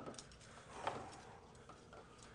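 Faint handling of resistance-band clips and a door anchor: a few light clicks, the clearest a little under a second in.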